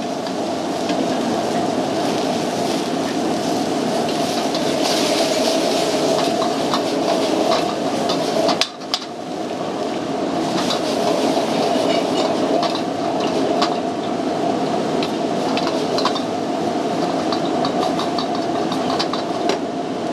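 Commercial high-pressure gas wok burner running at full flame while shrimp in sauce sizzle and bubble in a carbon-steel wok, with scattered small pops and clicks. The sound briefly drops out about nine seconds in.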